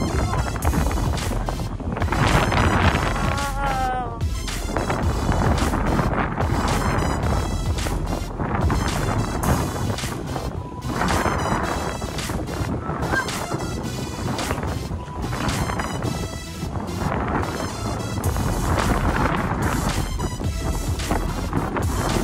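Wind blowing across the microphone: a steady, heavy rush that swells and falls in gusts.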